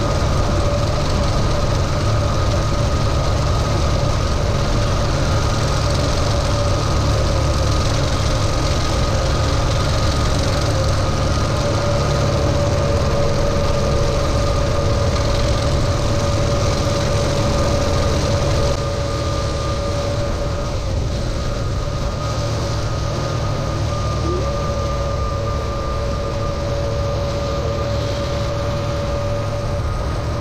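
Kubota M6060 tractor's four-cylinder diesel running steadily under load while driving a sickle bar mower through standing hay, with a steady whine over the engine. It gets a little quieter about two-thirds of the way through.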